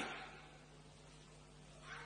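Near silence with a faint steady hum, after a man's voice trails off at the start.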